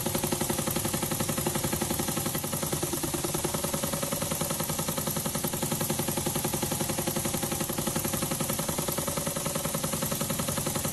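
Small spark-plug model engine running on compressed air, its rotary valve exhausting in a rapid, even beat with a light mechanical clatter, running steadily.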